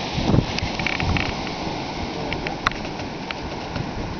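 Strong winter wind howling and buffeting the microphone: a steady rushing rumble that swells and eases in gusts, with a few light clicks.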